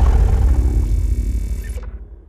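The tail of a logo intro sting: a deep rumbling boom with a faint musical tone over it, fading out steadily and dying away near the end.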